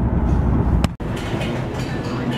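Steady low road rumble inside a moving car's cabin. About a second in it ends in a click and a brief dropout, and lighter indoor room noise with a low hum follows.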